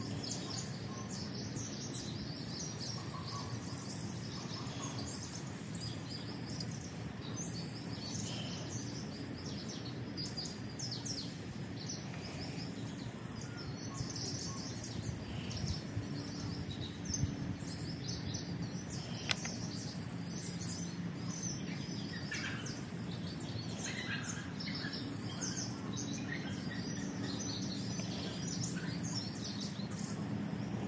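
Small birds chirping and calling on and off, over a steady low hum.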